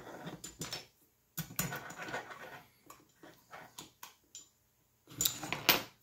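Hands handling a 3D-printed plastic motor module and an aluminium extrusion: irregular small clicks, knocks and rubbing, with a louder patch of knocks near the end.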